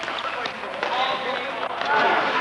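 Players' voices calling out during an indoor ball hockey game, with a few short clacks of sticks and ball on the rink.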